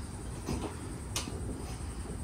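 Quiet background noise with two faint short clicks, one about half a second in and one just over a second in.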